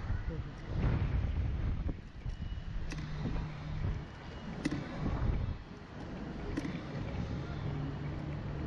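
Wind buffeting the microphone of the slingshot ride's onboard camera as the capsule swings and bounces. A low rushing noise swells about a second in and again around five seconds, with a few short clicks between.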